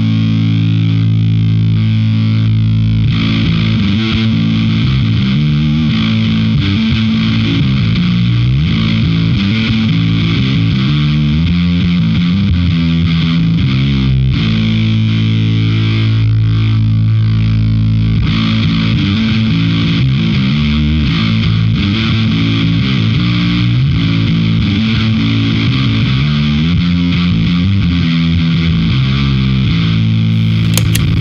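Fender Jazz Bass played through the Fuzzrocious M.O.T.H. overdrive and fuzz pedal: a heavily distorted bass line of held low notes. Its gritty upper edge changes character twice, as the pedal's knobs are turned.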